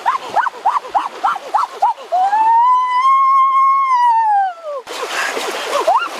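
A man's high-pitched voice yelping in quick short "oh" cries, then one long wail that rises and falls from about two to five seconds in. Rushing, splashing water comes in near the end, with more short cries over it.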